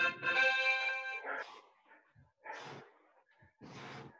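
An interval timer's chime: one steady tone with several pitches held together, about a second long, signalling the start of a work interval. Later come two short, quieter rushing bursts.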